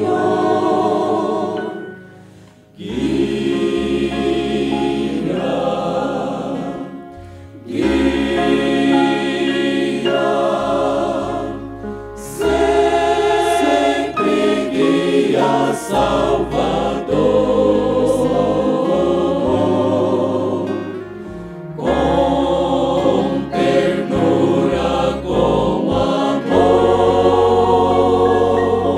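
Men's vocal group singing a gospel hymn together in harmony through microphones, phrase after phrase, with short breaths between phrases.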